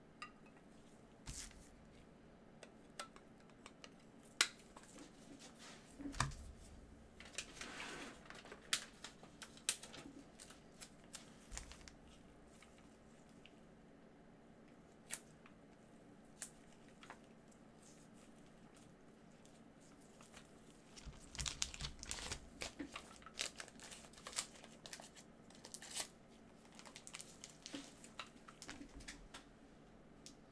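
Faint plastic crinkling and clicking as trading cards in plastic holders and sleeves are handled in nitrile gloves. It comes in irregular bursts, busiest a few seconds in and again past the middle.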